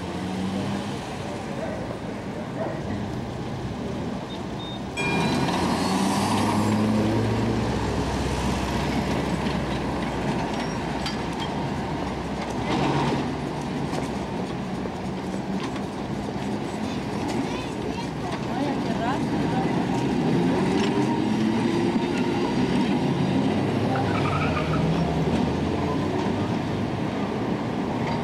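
City street traffic around the 1913 Oslo tram no. 87, with people's voices now and then; the sound steps up louder about five seconds in.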